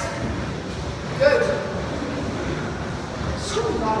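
A voice speaking briefly, about a second in and again near the end, over steady room noise in a large gym hall.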